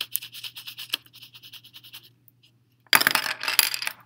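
Yellow coloured pencil shading quickly back and forth on paper, a rapid run of scratchy strokes that stops about two seconds in. About three seconds in comes a brief, louder rustling scrape, the loudest sound here.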